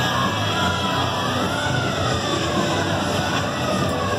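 Fairground midway din: a crowd's steady noise with music, and a faint tone that slowly rises and falls.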